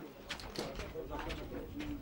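Several people talking at once in a crowd, their voices overlapping.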